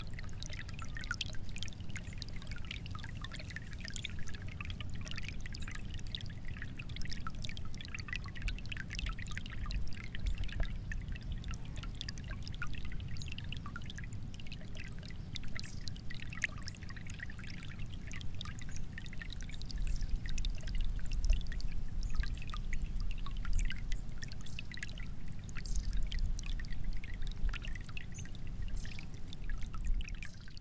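Water pouring or running steadily, a continuous rushing with a low rumble and fine spattering detail that swells slightly in the second half.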